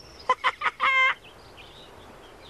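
Hen clucking: a few short clucks, then one longer, held squawk about a second in.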